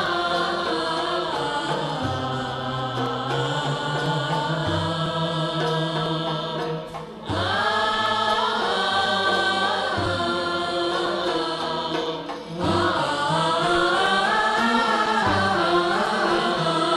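Gharnati (Andalusian classical) music: young voices singing long, melismatic phrases over violins played upright on the knee and lutes. The singing pauses briefly between phrases, about seven and about twelve and a half seconds in.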